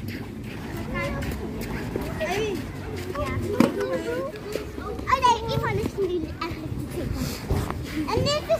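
Young children's voices, high-pitched chatter and squeals at play, with a sharp knock about three and a half seconds in.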